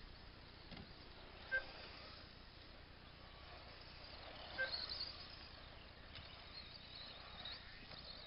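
Radio-controlled off-road buggies running around a track at a distance, their motors a faint high whine that rises and falls in pitch as they accelerate and pass. Two short beeps cut through, about a second and a half in and again about four and a half seconds in.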